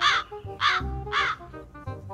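Three loud, short cries about half a second apart, each rising then falling in pitch, over background music with steady notes.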